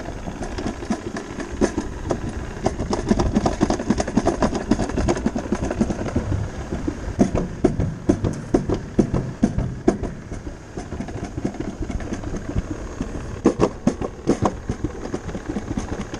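Summer toboggan sled running fast down a stainless steel trough track: a steady rushing rumble with frequent knocks and rattles. The knocks are busiest in the first ten seconds and again about fourteen seconds in.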